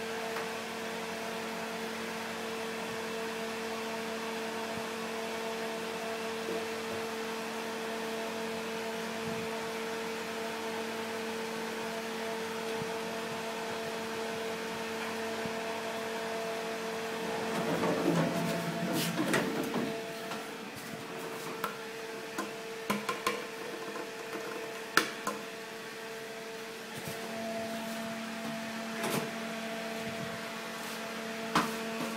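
Nechushtan-Schindler traction elevator heard from inside a small car: a steady, even hum for the first half. About 18 seconds in there is a short, rougher rumbling change, after which the hum drops away and a few sharp clicks follow. The hum returns near the end.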